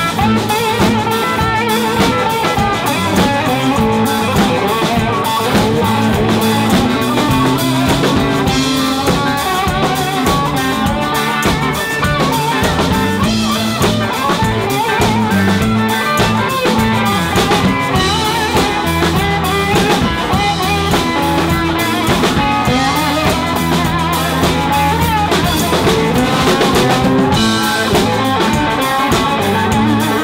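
Live blues band playing an instrumental passage: electric guitars, electric bass and a drum kit keeping a steady beat.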